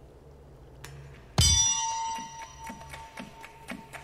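From the episode's soundtrack, a single loud metallic clang about a second and a half in, ringing on like a struck bell and slowly fading. Soft regular ticking follows, about two beats a second.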